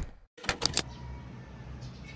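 A quick run of sharp clicks and knocks about half a second in, then faint steady room tone.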